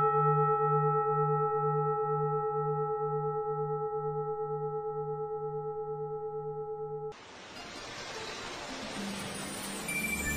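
A single struck bell ringing out, its low tone wavering in a slow pulse as it fades, then cut off abruptly about seven seconds in. A rising hiss swells up after it toward the end.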